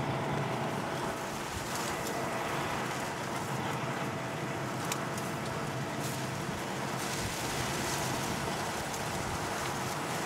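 Steady drone of a combine harvester running close by, with a couple of faint clicks partway through.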